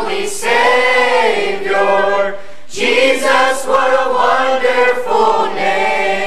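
Mixed youth choir of boys and girls singing the closing line of a gospel hymn, with a short break for breath about halfway through.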